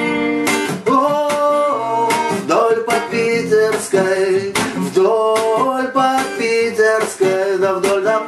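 Acoustic steel-string guitar strummed in a reggae rhythm, with short choppy chord strokes over ringing notes.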